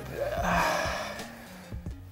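A man letting out a long breathy sigh that fades away over about a second and a half, over quiet background music.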